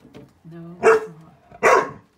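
A dog barking twice, two sharp, loud barks less than a second apart, in alarm at a grizzly bear in the yard.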